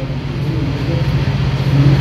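A man's low, steady closed-mouth hum, a held "mmm" filled pause between sentences, ending as he starts speaking again.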